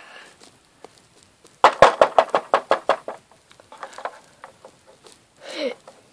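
Rapid knocking to be let in, about a dozen knocks in a second and a half, followed by a few faint taps.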